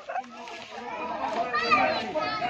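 A crowd of children and adults shouting and calling out together, the voices overlapping and growing louder toward the end.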